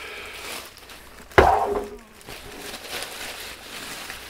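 Plastic bag rustling as a Sylvania SP770 boombox speaker is handled and tipped on a wooden table, with one sharp thump of the speaker's cabinet about a second and a half in.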